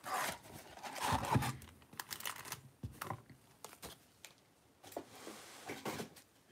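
Cardboard blaster box of Topps Chrome baseball cards being torn open and its packs pulled out: several bursts of tearing and rustling in the first three seconds, then quieter handling.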